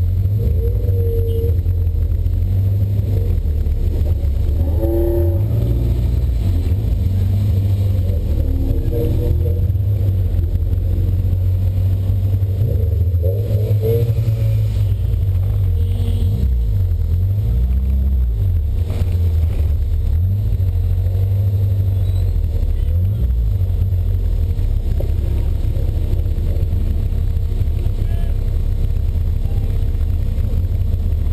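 1979 Volkswagen Golf GTI's engine under race load, heard from inside the cabin as a loud low drone. It rises and falls in pitch with the throttle, most clearly past the middle.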